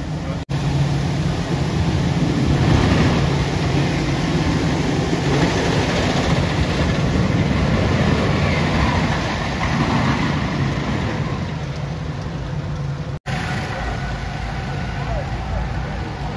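White Lightning wooden roller coaster train rumbling along its track, swelling from about two seconds in and fading again after about eleven seconds, over a steady low hum of park noise.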